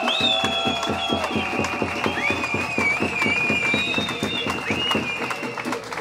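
Rally crowd making noise in answer to the speaker: a fast, even beat of clapping with whistles and long held tones over it. It stops shortly before the end.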